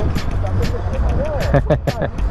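Motorcycle engines idling with a steady low rumble, with people talking over them.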